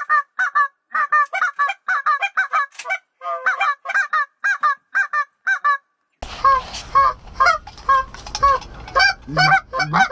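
Geese honking over and over, several honks a second, with brief gaps. About six seconds in, a steady wind rumble on the microphone comes in, and the honking continues from a hand-blown goose call in the blind.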